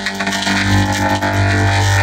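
Logo audio run through an IL Vocodex vocoder effect: a loud, dense, steady synthesized drone with a strong low hum.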